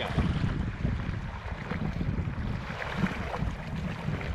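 Wind buffeting the microphone in a strong breeze, as a rough, uneven rumble, with choppy sea water splashing and washing around a sea kayak.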